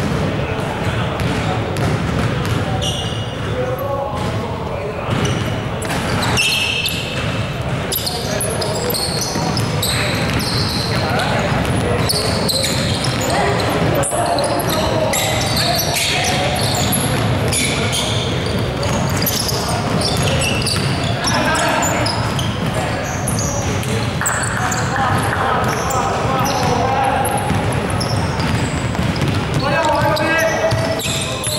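Basketball game on a hardwood court in a large sports hall: the ball bouncing, many short high sneaker squeaks, and players' voices calling out.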